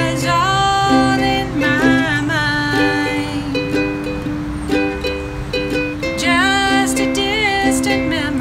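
A ukulele strummed in a steady rhythm under a woman singing a country song. The voice carries the first three seconds, drops out for a few seconds of ukulele alone, and comes back near the end.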